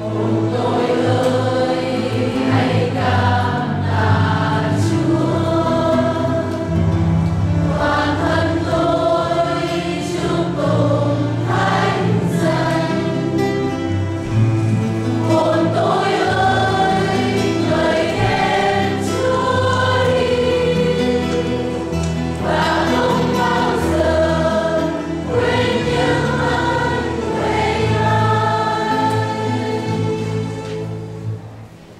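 Church choir singing a hymn, mainly women's voices with sustained, moving notes over a steady low accompaniment. The sound tapers off at the very end.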